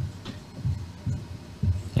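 A marker writing on a whiteboard, its strokes carrying as several soft, dull low thumps spaced irregularly through the two seconds.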